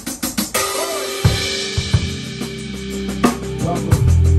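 Drum kit playing with a band: quick, even ticks at first, then a cymbal crash about half a second in. Sustained bass notes and drum hits enter about a second in as the groove starts.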